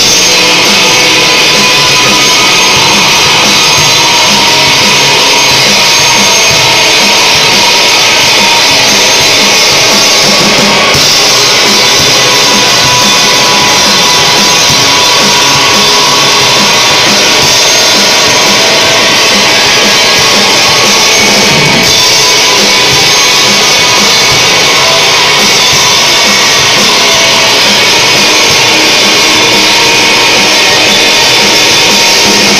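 A rock band playing live: electric guitars and a drum kit, loud and unbroken throughout.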